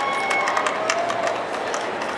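Action sound effects from an animated movie trailer playing over a large hall's loudspeakers: a steady noisy rush with many quick clicks and hits.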